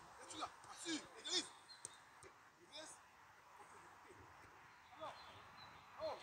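Faint voices calling out in short bursts, loudest about a second in, with a few light knocks; quieter through the second half.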